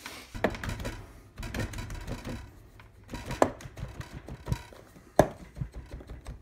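Moulding sand being filled into a wooden flask and packed down by hand and with a hand rammer: irregular thuds and rustling, with a sharp knock a little past the middle and the loudest one near the end.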